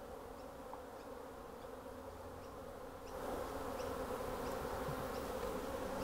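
Honeybees buzzing in a steady hum around an opened bee package, growing a little louder about three seconds in.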